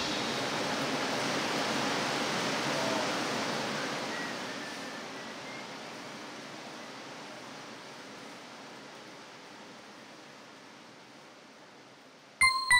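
A steady, even rushing noise that fades out slowly and smoothly.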